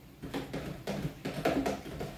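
A long spoon stirring Kool-Aid in a plastic pitcher, knocking against the pitcher's sides in a quick run of taps that starts a moment in and stops just before the end.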